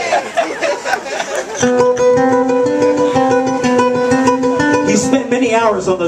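Live smooth jazz band playing, led by a nylon-string electric guitar, with held notes stepping back and forth between two pitches from about a second and a half in and sliding, gliding pitches near the start and end.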